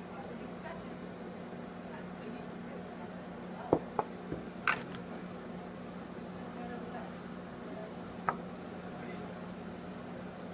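Small sharp metal clicks and taps from a hand tool working the coils on a rebuildable atomizer's deck: a cluster of four a little under four seconds in, and one more about eight seconds in. A steady low hum runs underneath.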